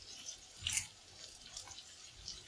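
Faint, sparse crackling as fresh curry leaves go into the hot pan of sliced onions, with one louder crackle about three quarters of a second in.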